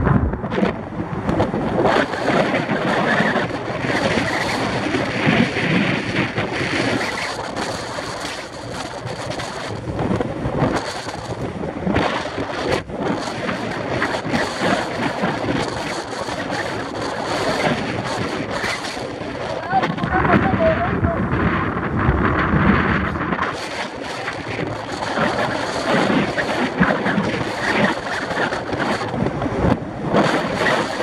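Wind buffeting the microphone and road noise from a moving vehicle, as a steady rushing noise, with faint indistinct voices under it.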